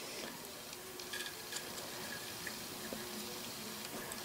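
Quiet shop with a few faint light ticks as a small 6-32 hand tap is turned into a drilled hole in a steel flywheel.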